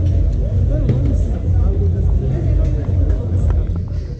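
Street noise: a steady low rumble with voices faintly underneath and a few small clicks near the end.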